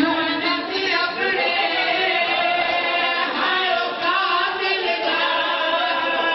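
Several men's voices chanting a mourning lament together without instruments, the voices overlapping.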